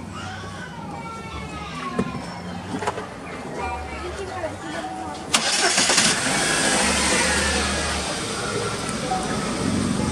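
Chevrolet Captiva Sport's Ecotec 2.4 four-cylinder engine starting with the hood open: it fires suddenly about five seconds in and then runs at a steady idle.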